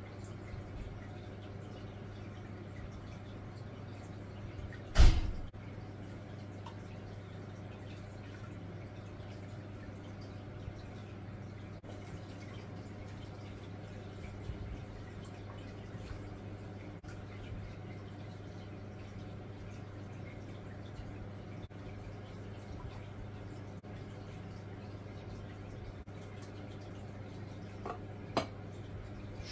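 Dark brown blackwater extract being poured slowly from a container into an aquarium, a steady low trickle of water into water. One loud knock about five seconds in, over a steady low hum.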